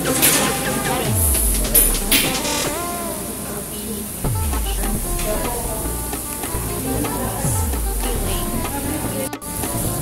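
Meat sizzling on a tabletop Korean barbecue grill, with music playing over it; a low falling tone in the mix repeats about every three seconds.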